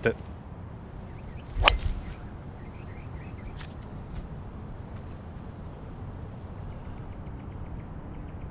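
A driver striking a golf ball off the tee: one sharp crack about a second and a half in, followed by faint steady outdoor background.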